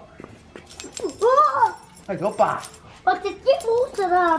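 A bunch of keys jangling as they are dangled, with a macaque giving a short call that rises and falls about a second in.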